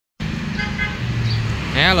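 Steady low motor-vehicle hum with a short, faint horn toot about half a second in.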